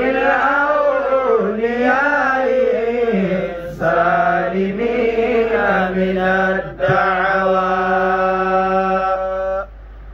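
A man chanting an Arabic supplication through a microphone in a slow, ornamented melody, drawing out the syllables. Near the end he holds one long, steady note, which stops just before the close.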